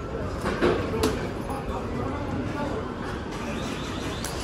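Busy produce-warehouse ambience: a steady low rumble with background voices, and two sharp knocks about half a second and a second in.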